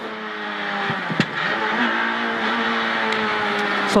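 Renault Clio R3 rally car's four-cylinder engine heard from inside the cabin, pulling steadily at high revs. A single sharp click comes about a second in.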